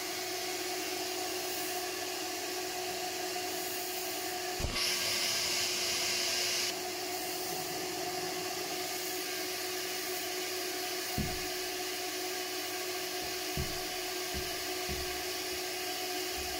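Ash vacuum cleaner running steadily with a constant motor hum, its hose sucking ash from the boiler's heat-exchanger tubes as a spiral wire brush scrubs inside them. About five seconds in the suction rushes louder for two seconds. There are a few dull knocks of the brush and nozzle against the tubes.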